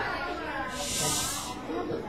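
A person's voice making one drawn-out hiss, a little under a second long, in the middle of soft talk.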